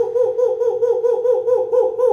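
A man's voice chanting 'who, who, who' over and over, fast and in a high hooting tone, about six syllables a second, each one rising and falling in pitch.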